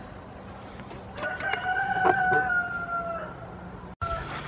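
A farm animal's single drawn-out call of about two seconds, starting with a few short onsets and then holding one note that sags slightly in pitch toward the end.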